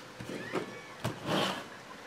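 Clear plastic trading-card holders being handled on a tabletop: faint handling noises, a light click about a second in, then a short scrape.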